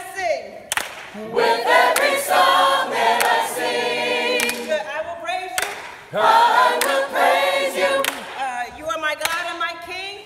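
Gospel choir singing a cappella in two long phrases with a short break between them, with sharp hand claps among the voices.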